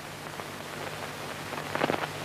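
Steady hiss and low hum of an old film soundtrack, with a short cluster of clicks near the end.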